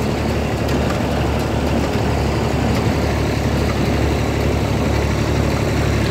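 Ford Dexta tractor engine running steadily under load while pulling a baler along a hay windrow, heard from on the tractor.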